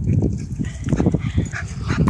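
A small terrier close by making quick, short huffing breaths and grunts, a rapid run of puffs.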